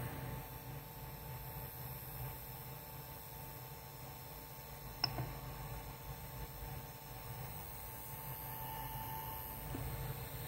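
Low steady hum of a powered-up Ender 3 3D printer's cooling fans, with one sharp click about five seconds in as the printer's control knob is pressed.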